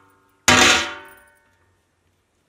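A long metal rod clanging down onto the big metal lid of a cooking pot, one sharp hit about half a second in that rings and fades within a second.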